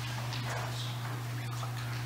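Room tone dominated by a steady low electrical hum, with faint scattered small clicks and rustles.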